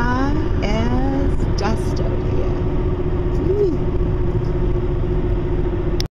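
Road and engine noise of a car travelling at highway speed, heard from inside: a steady low rumble with a constant hum. A person's voice comes in briefly during the first second and a half.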